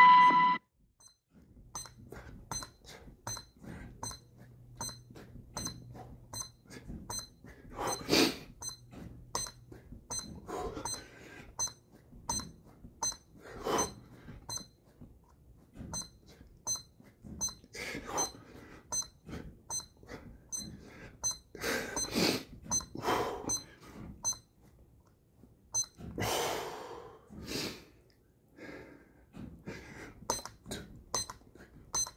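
An electronic push-up counter gives a short high beep each time the chest presses its button, repeating at a steady pace as the reps are counted. Hard exhaled breaths from the exertion come every few seconds and are the loudest sounds.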